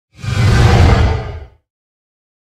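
A single whoosh sound effect with a heavy low end, swelling quickly and fading out after about a second and a half.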